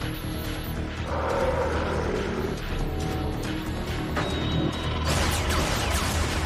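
Soundtrack music with mechanical sound effects of robots, a steady low hum with whirring and clanking. It grows louder near the end.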